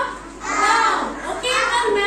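Young children's voices, several talking and calling out at once, in two short spells with a brief lull between.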